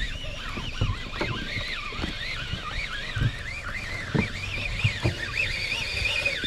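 Fishing reel being cranked to bring in a hooked striped bass: a warbling gear whine that rises and falls a few times a second with the turns of the handle, over scattered dull knocks.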